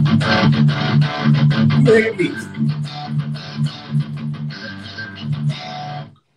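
Distorted electric guitar played through a Line 6 HX Stomp on a Mesa Dual Rectifier amp simulation, with a pitch-drop effect switched on: a fast picked riff over low notes, with a note sliding down about two seconds in. It cuts off suddenly at the end.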